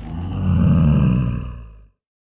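A deep roar sound effect that swells over about a second and then fades out near the end.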